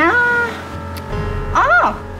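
A woman speaks two short, drawn-out words with strongly sliding pitch, over steady background music.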